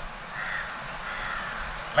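A bird calling twice, the second call longer than the first.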